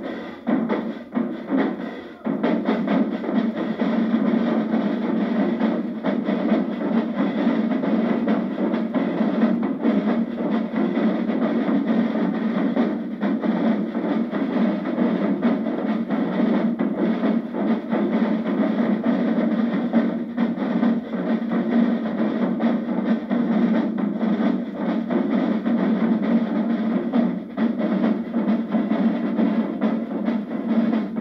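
Marching-band drumline (snare drums, multi-tenor drums and hand cymbals) playing a dense cadence together. There is a short drop about two seconds in, then the full line comes back in and keeps going.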